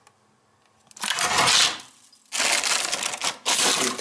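Frozen food in plastic wrapping being handled and shifted about in a freezer, making rustling and scraping noise with a few clicks. It comes in two stretches: a short one about a second in and a longer one that runs to near the end.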